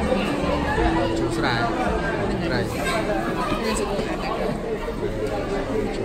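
Speech: people talking, with chatter in the background.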